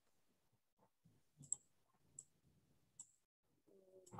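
Near silence with three faint sharp clicks, spaced a little under a second apart in the middle stretch.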